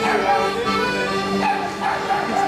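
Live acoustic band music playing at a steady level, with long held notes.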